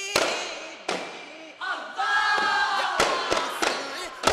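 Daf frame drums struck together in sharp unison beats, a quick run of three near the end, while a group of male voices chant in unison. In the middle the voices hold one long note that sags slightly in pitch.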